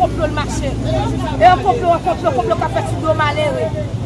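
A woman speaking loudly and excitedly, with no break, over a steady low hum.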